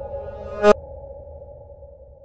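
Channel intro logo sting: a held, ringing tone with one sharp struck note about two-thirds of a second in. The tone then slowly fades away.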